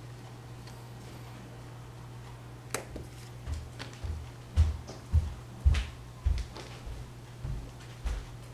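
A steady low hum, then from about three seconds in a run of soft, uneven low thumps with faint clicks, roughly two a second.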